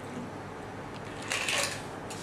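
Metal cocktail shaker and strainer rattling briefly as a cocktail is single-strained into a glass, about one and a half seconds in; otherwise faint room sound.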